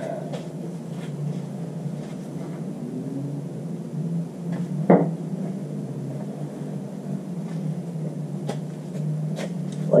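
Handling sounds as a gear lube pump's threaded plastic fitting is screwed into the drain hole of an outboard's lower unit: faint clicks and one sharp knock about halfway through, over a steady low hum.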